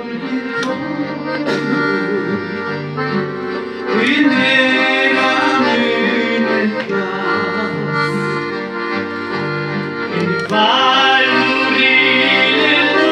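Red piano accordion playing a slow tune: sustained chords over a bass line that alternates between notes. It grows louder about four seconds in and again near the end.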